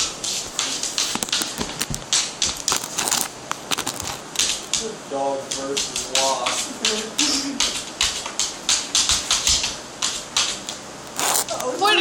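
A dog's claws clicking and scratching rapidly and irregularly on a wooden surface as it paws at it.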